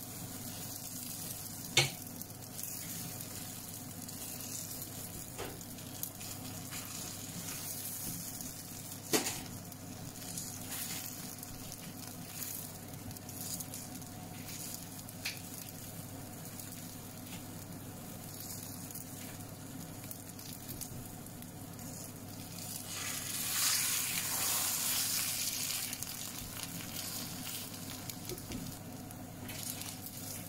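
Egg sizzling as it fries in a pan, a steady hiss. Two sharp knocks come in the first ten seconds, and the sizzling swells louder for a few seconds about three quarters of the way through.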